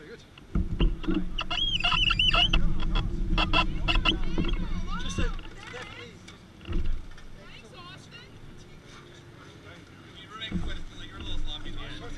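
A small four-stroke kart engine runs steadily for about four seconds, starting about half a second in, then fades out. Voices can be heard around it.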